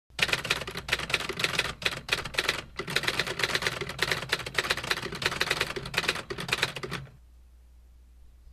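A fast, uneven run of sharp taps that goes on for about seven seconds, with two short breaks, and stops suddenly.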